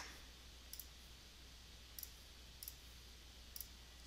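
Near silence with four faint computer mouse clicks spread through the few seconds, as items are selected in the software.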